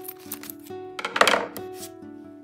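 A thin plastic packet crinkling and crackling as fingers work at tearing it open, with one loud crackling burst a little over a second in. Background music plays throughout.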